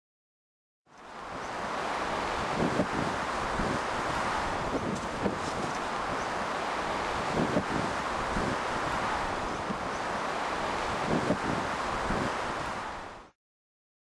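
Steady outdoor rush of wind, with a few faint gusts on the microphone, fading in about a second in and fading out near the end.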